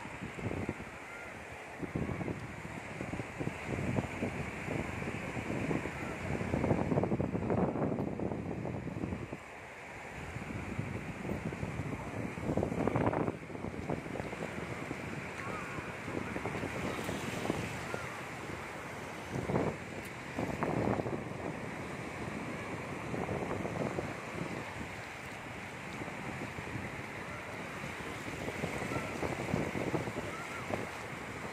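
Small waves breaking and washing up a shallow beach, a steady surf wash, with wind buffeting the phone's microphone in several louder gusts.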